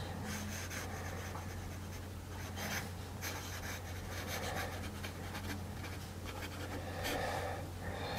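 Fine steel-nibbed Lamy Safari fountain pen writing in cursive on smooth Clairefontaine paper: faint, irregular scratching of the nib across the page.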